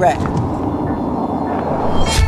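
Bristol Fighter's 8-litre V10 running at a steady pace, with tyre and wind noise, picked up on the car's bonnet.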